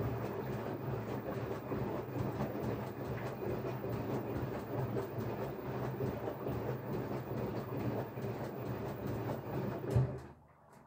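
LG front-loading washing machine running, its motor and drum giving a steady rumble with a fast rattling clatter; the noise drops away abruptly at the very end.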